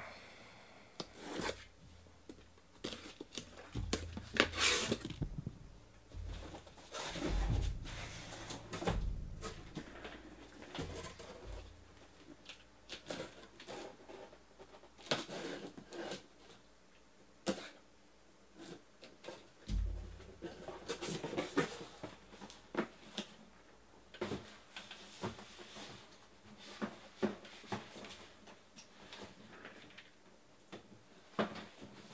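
Cardboard shipping case being cut open and its shrink-wrapped boxes taken out and set down: irregular scrapes, rustles, clicks and a few dull thumps.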